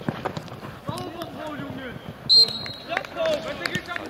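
A referee's whistle blows once about two seconds in: a single short, high, steady blast and the loudest sound here. Players shout across the pitch around it, with a few sharp knocks of the ball being struck.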